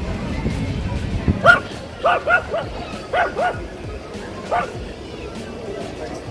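Yorkshire terrier barking: a run of about six short, high yips, some in quick pairs, starting about a second and a half in, with background music.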